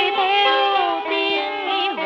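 Cải lương music: a melodic line with sliding pitch bends and vibrato over sustained string accompaniment.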